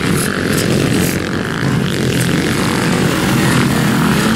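Several motocross bikes running together on the track, their engines blending into one loud, steady stream of engine noise.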